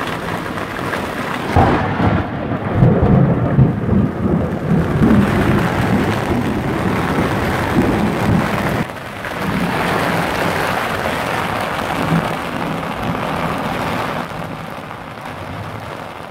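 Heavy downpour with thunder: a sudden crack about a second and a half in, then a long rolling rumble over the rain, after which the rain carries on steadily and fades near the end.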